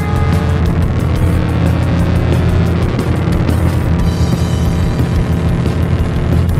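Instrumental art-rock music: a dense, noisy band texture over heavy sustained bass, with a steady drum beat.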